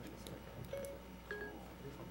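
Short electronic beeps from a mobile phone being dialed: two brief tones about half a second apart, over faint room murmur and a few small clicks.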